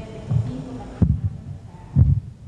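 A tabletop microphone on its stand being handled and passed along, the mic picking up its own handling as dull thumps: three in a row, the sharpest about a second in.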